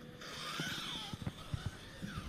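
Scissors slicing through polyester aircraft covering fabric: a rasping hiss lasting about a second, then a few soft, low knocks.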